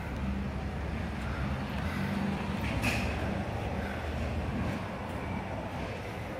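Steady low engine-like rumble and hum from nearby traffic or machinery, with a single short click about three seconds in.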